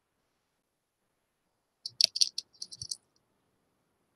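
A brief burst of rapid clicking and rattling, lasting about a second from roughly halfway through, heard over an online-meeting microphone after near silence.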